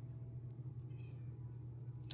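Steady low electrical hum under quiet room tone, with no distinct event standing out.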